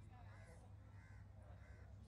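Faint crow cawing, about three short calls roughly half a second apart, over a low steady hum.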